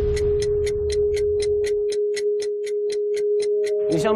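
Suspense sound effect: a clock ticking evenly about four times a second over a steady held tone. A low rumble underneath fades out, and a second, higher tone joins near the end.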